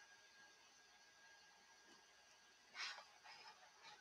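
Near silence: room tone, with one faint short noise about three seconds in.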